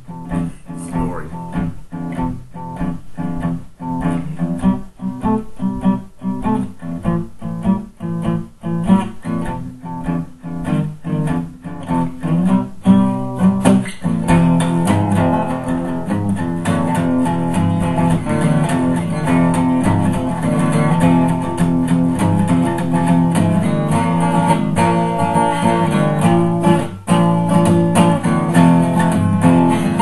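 Steel-string acoustic guitar playing a 12-bar blues: short, choppy strummed chords with gaps between them, turning into fuller, more continuous playing about halfway through.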